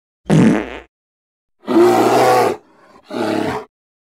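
Three short wordless vocal sounds, about a second apart; the middle one is the longest and the last is quieter.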